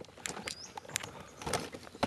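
A wheelchair rolling and being pushed over a dirt trail littered with twigs and wood chips, giving irregular small crunches and clicks.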